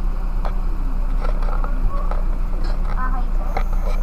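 Car engine idling, a steady low hum heard from inside the cabin, with faint brief voices and a few light clicks.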